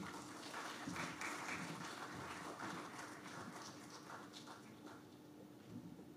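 Faint audience applause after a speech, fading out over about five seconds.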